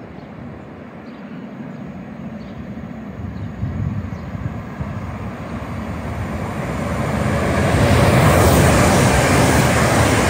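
A GWR multiple-unit passenger train approaching along the platform. Its noise grows steadily from about halfway and is loud over the last couple of seconds as the train arrives.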